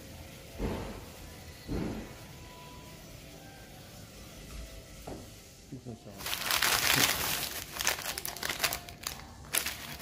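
Two soft knocks, then a few quiet seconds. About six seconds in, a hand starts rummaging through thin plastic bags of cellophane-wrapped candies, and the bags crinkle loudly and keep crinkling.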